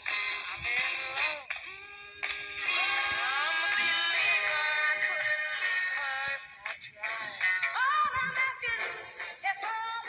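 A 1960s pop-rock recording: singing over band accompaniment.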